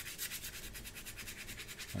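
A big paintbrush loaded with thin ink scrubbed back and forth on ordinary sketch paper: a soft, even run of rapid rubbing strokes, many a second.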